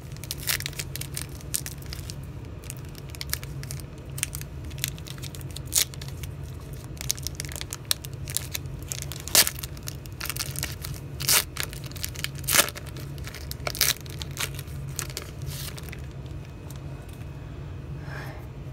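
A foil trading-card pack being torn open by hand, its wrapper crackling and crinkling in a long run of sharp crackles, with a few louder snaps in the middle, over a steady low hum.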